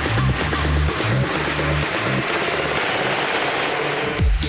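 Electronic dance music on the DJ's mix, in a breakdown: sustained bass notes with no kick drum under a dense whooshing noise build-up. The bass drops out about two-thirds of the way through, leaving the noise.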